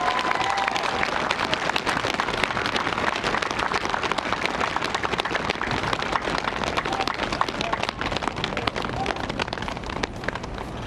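Outdoor audience applauding at the end of a song, a dense clatter of clapping that eases off slightly toward the end.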